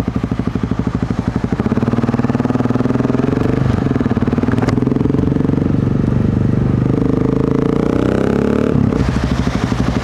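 Single-cylinder thumper engine of a 2008 BMW G650 Xchallenge idling with an even, slow pulse, then pulling away about a second and a half in. It rises in pitch through a couple of upshifts and drops sharply near the end as the throttle is closed.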